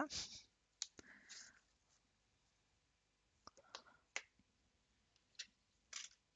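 A few faint scattered clicks and a short soft rustle as a metal nail-art stamping plate is slid out of its card sleeve and laid down on the table.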